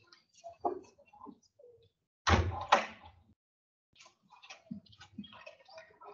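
A classroom door being shut, closing with two loud thuds about half a second apart a little over two seconds in.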